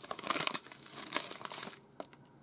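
Plastic candy wrapper crinkling and rustling in the hands as the packet of strawberry popping candy is opened, a dense run of crackles that dies down near the end.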